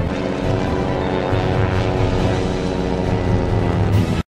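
Soundtrack music laid over the film footage: loud and steady, with held notes over a heavy low end.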